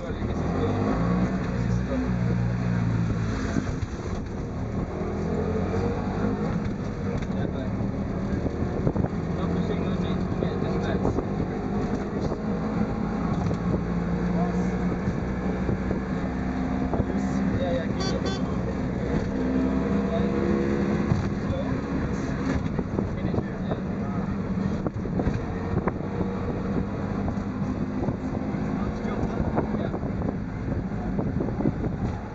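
Auto rickshaw's single-cylinder engine running while under way, heard from inside the open cab, its pitch stepping up and down with speed, over rough road and wind noise.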